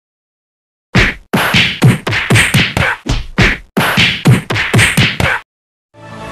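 A rapid flurry of dubbed punch and slap sound effects, about a dozen sharp hits over four and a half seconds, starting about a second in and stopping abruptly.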